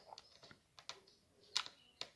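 Screwdriver turning a screw out of a laptop's plastic bottom cover: a few faint, irregular light clicks of the bit in the screw head, the loudest about one and a half seconds in.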